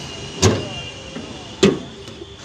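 Two sharp metal clunks about a second apart as the bonnet of a Chevrolet Sail is unlatched and opened.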